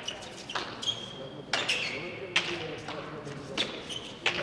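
Hand-pelota rally: the hard pelota ball is smacked by bare hands and rebounds off the frontón wall and floor. There are four sharp smacks about a second apart, the loudest a little past the middle.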